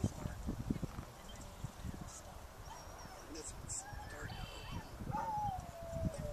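A dog whining in long, sliding tones, one falling whine ending right at the start and another rising then falling about five seconds in, over wind buffeting the microphone.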